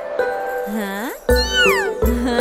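Light background music with a high, squeaky cartoon voice effect in the second half: one call that swoops up, then slides down.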